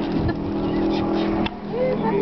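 Airboat's engine and propeller running steadily at speed, its note changing about three-quarters of the way in as one tone drops away.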